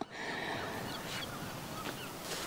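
Quiet outdoor ambience on an open clifftop: a steady, even hiss, with two faint short high sounds, one about a second in and one near the end.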